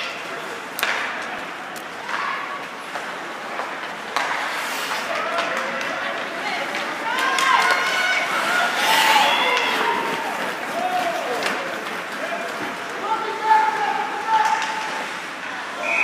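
Ice hockey play in a rink: sharp clacks of sticks and puck with the hiss and scrape of skates on ice, under raised voices shouting and calling out, loudest around the middle.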